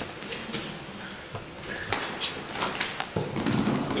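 Wrestlers drilling takedowns on gym mats: bare feet scuffing and bodies landing, heard as an irregular string of short slaps, scuffs and thuds.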